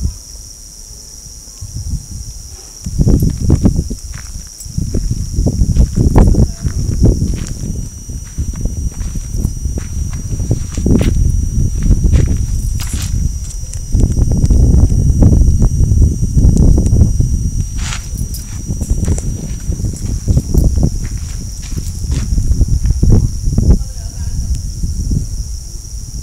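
Wind buffeting the microphone in irregular low rumbling gusts, with a faint steady high whine underneath.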